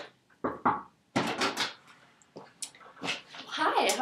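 Brief, indistinct speech and a few short knocks or shuffles from people moving about a small room. A voice starts speaking clearly near the end.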